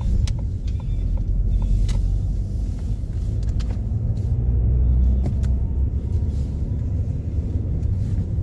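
Steady low rumble of a car on the move, with a few faint clicks in the first two seconds.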